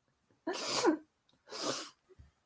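A woman sneezing: a breathy rush of air about half a second in, then a second, shorter burst of air about a second later.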